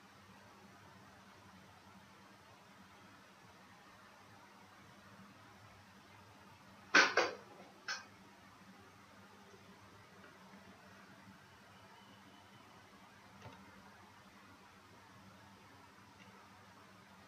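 Faint steady room tone with a low hum. About seven seconds in, two sharp clicks come in quick succession, with a third, softer one a moment later.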